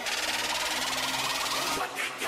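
Electronic intro sound effect for a channel logo animation: a steady, hiss-like swell that leads into the intro music.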